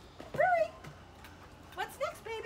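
A Labrador retriever puppy gives one short, high-pitched whine about half a second in, with a shorter high call near the end.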